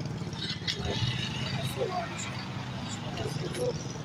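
Several people talking indistinctly over a steady low hum.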